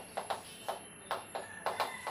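Chalk writing on a chalkboard: a series of about seven short taps and scrapes as letters are stroked onto the board.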